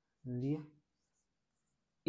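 Marker pen writing on a whiteboard: faint, light scratching strokes in the second half, after one short spoken word.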